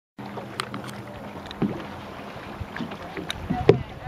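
Lake water slapping against a small boat, with scattered knocks against the hull. A low hum fades out in the first second and a half.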